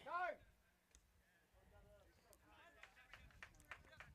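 Near silence: a faint voice in the background, and from about three seconds in a run of faint sharp ticks, about four a second.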